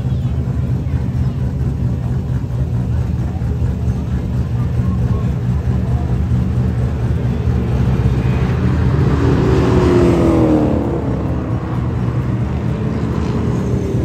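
Skid cars' engines running on a racetrack, a steady heavy rumble with one engine revving up and down, loudest about two-thirds of the way through.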